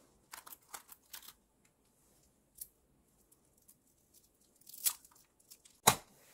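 Aged compressed pu-erh tea brick being pried apart and crumbled by hand: a run of short, dry crackles, then two louder sharp cracks near the end.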